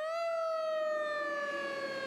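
Fire alarm siren sounding one long wail that peaks in pitch just after the start and then slowly falls.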